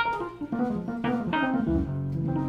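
Keyboard playing slow, ringing jazz chords: one struck at the start and a new one about a second and a half in, with a low bass note entering near the end.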